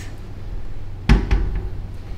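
A tall built-in cupboard door pushed shut, closing with one sharp thud about a second in and a lighter knock just after it.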